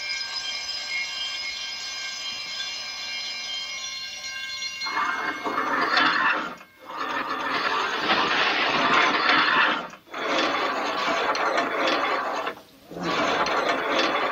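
Electric alarm gongs of a museum burglar alarm ringing, set off by the removal of an exhibit from its contact. The first five seconds or so are a steady ringing of several tones, then a louder, noisier ring that breaks off briefly three times.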